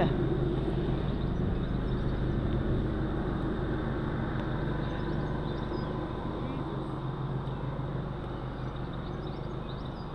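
Steady low outdoor rumble, easing slightly in the second half, with a few faint high chirps.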